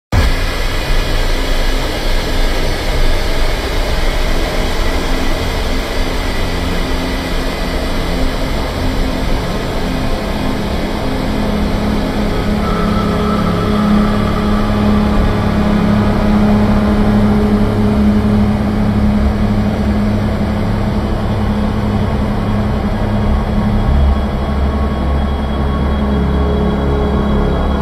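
Ambient experimental electronic music: a dense, noisy wash over a steady low drone. A sustained low tone swells in about halfway through, and the bass grows stronger near the end.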